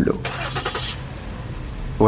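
Car engine running steadily at low revs, with a short rush of hiss in the first second.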